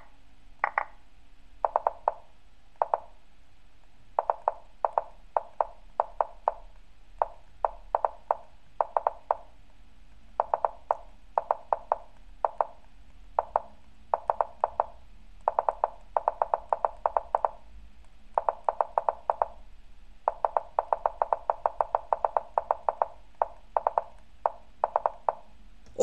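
Lichess move sounds: short wooden clicks, one for each move, coming in quick runs of several a second with brief gaps as both sides play rapid moves in a bullet endgame.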